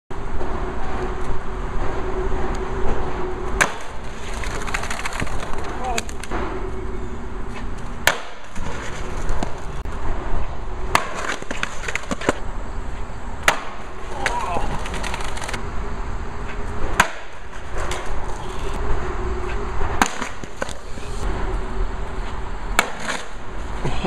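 Skateboard wheels rolling on concrete, with about a dozen sharp clacks and slaps of the board hitting the concrete spread through, as attempts to drop in onto the bank end with the board shooting away riderless.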